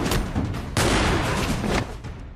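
Cartoon combat sound effects from a hand-to-hand clash: a loud, dense blast of impact noise that swells about three-quarters of a second in and cuts off just before the end, over fight music.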